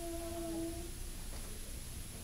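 Quiet room tone in a pause between spoken lines, with a faint, short, steady hum of one pitch lasting under a second near the start and a thin high whine running throughout.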